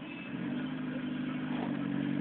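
Small 4x4's engine held at steady revs, pulling in thick mud and rocks, growing slightly louder.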